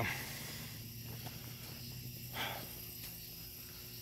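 Steady faint chirring of night insects such as crickets, with a brief breathy sound about two and a half seconds in.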